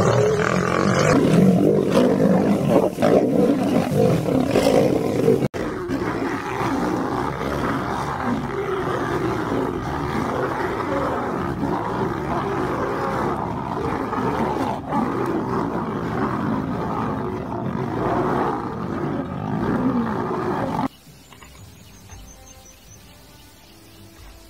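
Lions fighting, roaring and snarling loudly and without let-up. There is a brief break about five seconds in, and the sound cuts off abruptly near the end, leaving something much quieter.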